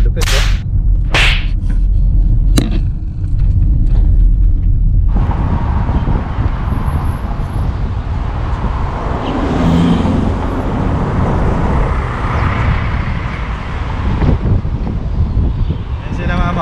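A car driving, heard from inside: a low rumble at first. About five seconds in, a loud, steady rush of wind and road noise comes in from an open car window and keeps going.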